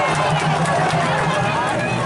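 Football stadium crowd: many voices shouting and calling over one another in a steady din.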